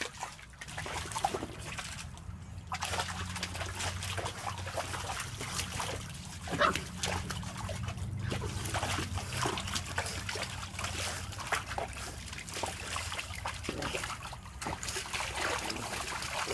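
A pug growling low and steadily while wading through shallow water in a plastic paddling pool, with splashing and trickling from its legs and face in the water. The growl starts about a second in and stops shortly before the end; the splashing runs on throughout.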